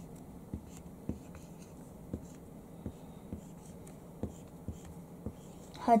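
Whiteboard marker writing on a whiteboard: a string of short, faint strokes and taps at irregular intervals.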